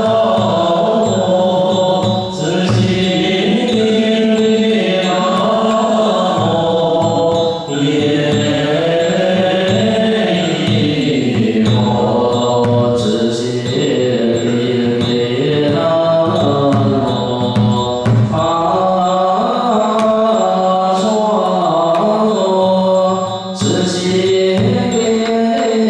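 A group chanting a Buddhist liturgical melody in unison, in long held notes that step slowly from pitch to pitch. A steady beat of drum strikes keeps time under the voices.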